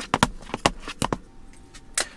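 A small box being flipped over and over by hand on a laptop lid: a quick, irregular run of knocks, about five a second, that stops a little over a second in, with one more knock near the end.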